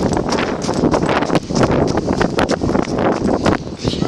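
Footsteps crunching on a shingle beach: a dense, irregular run of pebble crunches, with wind buffeting the microphone.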